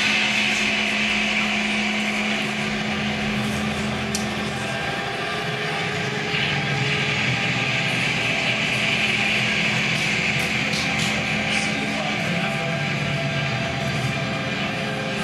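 Live electronic music: a dense, steady drone with a held low tone under a hissing, noise-like upper layer and a few faint clicks, with no beat.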